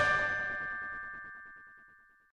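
The last note of the programme's theme music ringing out: a bell-like chord that fades away over about two seconds.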